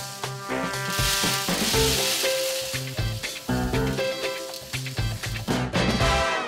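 Freshly roasted coffee beans pouring out of a drum roaster with a steady hiss, over background music.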